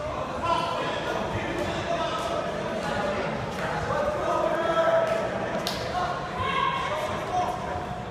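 Crowd of spectators shouting and cheering in a large echoing hall, many voices overlapping without clear words. A few sharp thuds stand out, the loudest a little past halfway.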